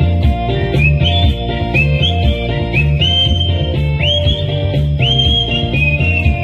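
Melody whistled into a microphone and played through a PA, over a backing track with a steady bass-and-drum beat. The whistled notes slide up into two long held high notes in the second half.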